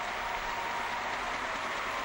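Large arena crowd applauding steadily at the end of an ice dance performance.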